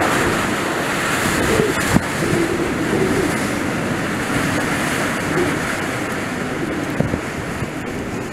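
Bora wind blowing at gale force, a loud steady rush with a faint wavering howl under it. Gusts knock on the microphone about two seconds in and again near the end, and the rush eases slightly toward the end.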